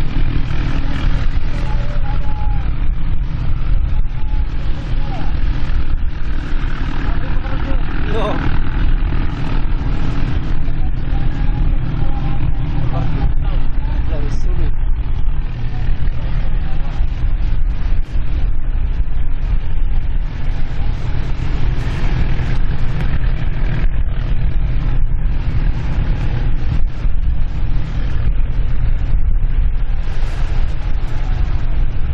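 Engines of racing katinting outrigger boats running together in a steady, unbroken drone, with a heavy low rumble and faint voices under it.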